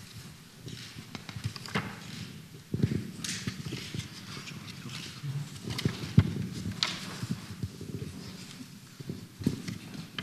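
Irregular soft knocks, creaks and rustles from a seated audience shifting on wooden chairs in a quiet room, with a few sharper thumps.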